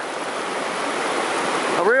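A shallow river running low over exposed boulders: a steady rushing of water.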